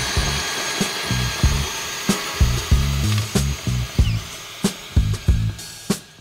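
A tilther, a small bed tiller driven by a cordless drill, running steadily: a motor whine over churning soil, which cuts off just before the end. Background music with a repeating bass line plays over it.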